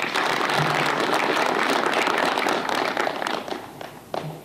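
Audience applauding, a dense patter of many hands that dies away about three and a half seconds in.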